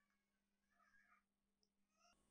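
Near silence: room tone with a faint steady hum and a few very faint, brief high-pitched sounds in the first half.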